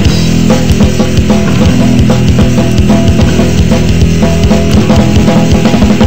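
Loud heavy metal music: held, distorted-sounding low guitar chords over fast, busy drumming with rapid bass-drum hits.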